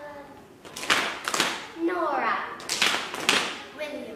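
A group of children and adults clapping together in a steady rhythm, two claps at a time, with a pause between the pairs in which a single child says a name.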